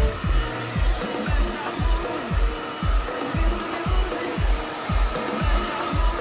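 Handheld hair dryer blowing steadily, under background music with a steady beat of about two thumps a second.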